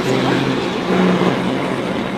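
A steady low hum made of several held tones, over a haze of background noise.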